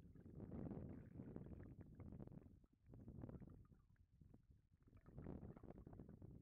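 Faint, muffled low rumble of river water moving around an underwater camera housing, swelling and fading in waves with a few small knocks.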